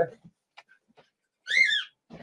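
A single high call from a pet, rising then falling in pitch and lasting under half a second, about a second and a half in.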